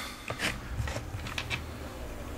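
Faint clicks and rubbing from a plastic Scalextric track section being handled, over a low steady hum.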